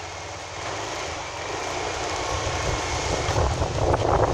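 Small motorcycle engine running and growing louder as it pulls away, with a low rumble and a steady rushing noise.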